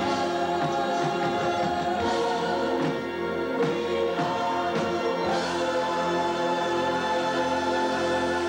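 Stage show cast singing together in chorus, holding long notes, with the chord shifting about two seconds in and again a little after five seconds.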